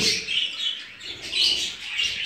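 Budgerigars chirping: short, high chirps twice, about a third of a second in and again near a second and a half.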